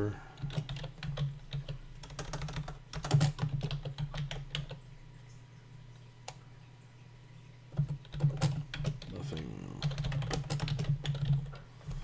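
Typing on a computer keyboard: two runs of quick keystrokes with a pause of a couple of seconds between them and a single click in the pause.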